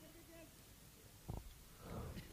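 Near silence: faint low background noise, with one brief faint knock a little over a second in.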